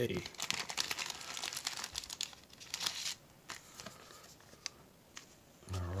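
Foil wrapper of a trading-card pack crinkling as it is torn open, dense and continuous for about three seconds, then a few light clicks and rustles as the cards are handled.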